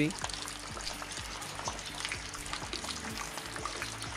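Light drizzle falling on leaves and the ground: a steady soft hiss of rain with many small drop ticks.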